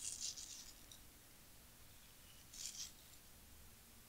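Fine salt sprinkled onto creamed butter in a glass bowl: two brief, faint grainy patters, one at the start and one about two and a half seconds in.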